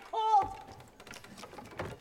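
A woman's voice holding a drawn-out, wordless note for about half a second, followed by faint clicks and rustling.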